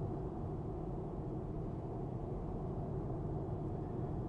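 Steady low road and tyre noise inside the cabin of a Tesla Model 3, an electric car, cruising at about 56 mph on the freeway.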